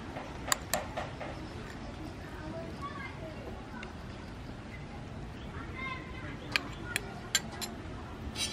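A metal spoon clinking against a ceramic bowl as tamarind sauce is scraped out into the soup pot: two sharp taps about half a second in, then a quick run of four taps near the end.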